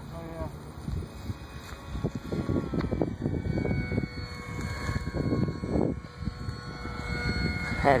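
Faint, steady high whine of a distant RC model jet in flight. Wind gusts buffet the microphone.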